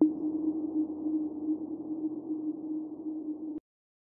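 Background music: one sustained low synth note over a soft hiss, which cuts off suddenly near the end into silence.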